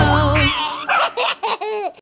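The backing music ends on a held note, then a baby giggles in about four short bursts.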